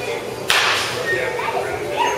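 A baseball bat hitting a ball: one sharp crack about half a second in, with a short echo, over background chatter.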